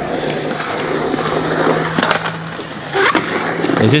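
Skateboard wheels rolling over smooth concrete, a steady rolling rumble with a sharp clack about two seconds in and another, louder, about a second later.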